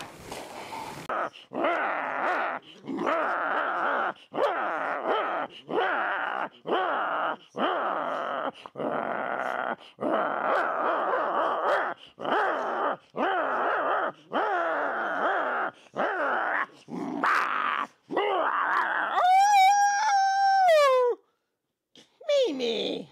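A Great Dane play-growling while it mouths a hand, a run of rough growls about a second long each, broken by short breaths. Near the end it gives one longer, higher-pitched drawn-out howl that drops at the end.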